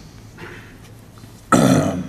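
A pause with quiet room tone, then about one and a half seconds in a short, loud, rough throat noise from a man close to the microphone, lasting about half a second.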